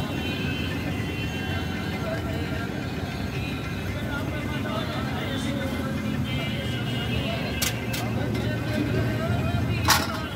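A steady low rumble with voices in the background, then a few sharp metal clinks near the end, the last and loudest just before the close: a perforated steel skimmer knocking against an iron kadai of frying oil.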